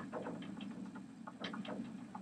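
Hair being twisted and rubbed between fingers close to the microphone, giving faint, irregular clicks and crackles over a low steady hum.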